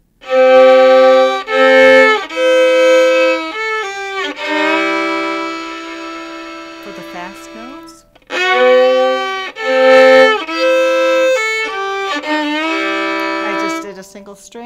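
Solo fiddle playing a country fill in double stops, two strings bowed together, with slides into and out of notes. The fill is played twice, with a brief break about eight seconds in.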